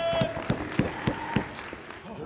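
Sharp handclaps from the wrestling crowd, about five in quick succession at roughly three a second, fading out after a second and a half. A shout ends just as they begin.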